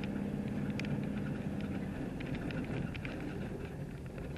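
Inside a car's cabin while driving slowly on a gravel road: a steady low engine hum and tyre rumble, with faint scattered ticks. The engine note eases off about halfway through.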